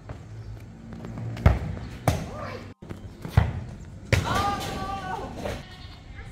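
A rubber ball is kicked around on an artificial-turf court, giving three dull thumps in the first half, followed by a voice calling out.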